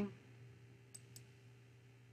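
Two faint computer mouse clicks about a quarter second apart, about a second in, over a low steady hum.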